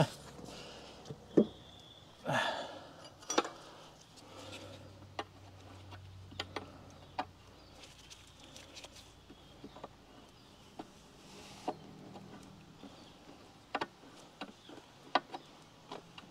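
Scattered light metallic clicks and knocks of hand tools as the last bolt is worked on the rusty gear cover of a 1927 John Deere Model D's first reduction housing. A low hum sounds for a few seconds near the middle.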